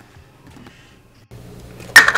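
Quiet room tone, then a steady low hum comes in, and one sharp clack of hard plastic sounds near the end as something is set down or snapped shut at a drip coffee maker.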